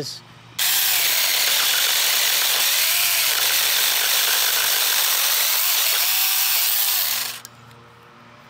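Alloyman 6-inch cordless mini chainsaw running and cutting through a branch, starting about half a second in and cutting off suddenly near the end once the branch is through. Its motor pitch wavers as the chain bites into the wood.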